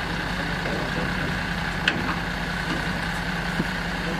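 Flatbed tow truck's engine running steadily at idle with a low hum, a single short click about two seconds in.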